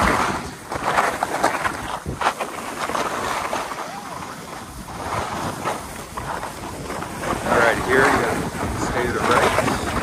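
Skis sliding and scraping over freshly blown machine-made snow, with wind rushing over the microphone of a phone carried by the moving skier. The rushing noise swells and fades unevenly.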